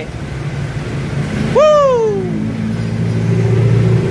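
Street traffic: a motor vehicle engine running steadily. About one and a half seconds in, a loud drawn-out cry, like a voice calling out, jumps up and then falls slowly in pitch.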